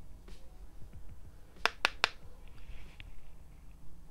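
Three quick sharp taps about a fifth of a second apart as a makeup brush is worked against a small plastic highlighter compact, followed shortly by a faint soft swish of the brush.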